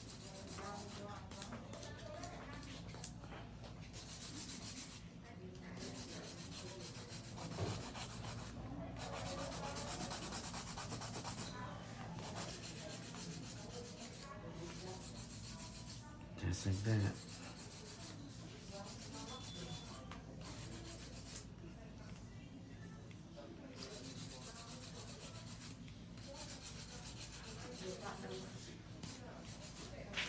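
A nail file rubbing over an acrylic nail in repeated strokes that pause now and then. A louder thump comes a little past halfway.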